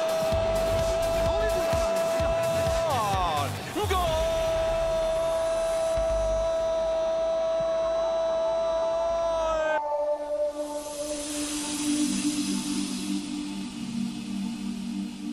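Football commentator's long drawn-out "gooool" cry, held on one steady pitch in two long breaths, the second running to nearly ten seconds in and dropping in pitch as it ends. After it, a softer stadium background takes over.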